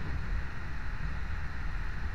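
Passenger train running, heard from aboard: a steady low rumble with an even hiss over it.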